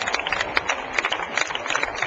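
Large audience applauding: dense, irregular clapping.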